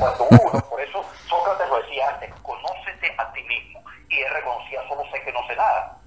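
Continuous talk from a voice with the thin, narrow sound of a phone line, with a brief low thump in the first half-second.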